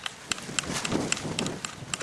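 Light irregular metallic clicks and handling noise from the threaded muzzle end of a Kel-Tec PLR-16 pistol as the muzzle device is worked by hand. There is a short rustling noise in the middle.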